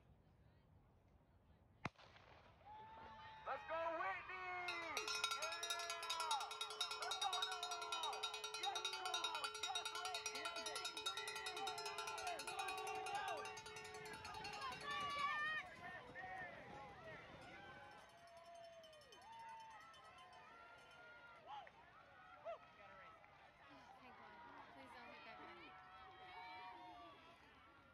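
A starting pistol cracks once about two seconds in, setting off a cross-country race. Spectators then cheer and yell for about ten seconds, thinning to scattered shouts.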